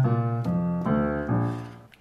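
Piano playing a walking bass line in the low register, a new note about every half second, dying away near the end.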